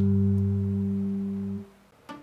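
Electric bass guitar's final note, a low G, ringing out and slowly fading, then damped about one and a half seconds in.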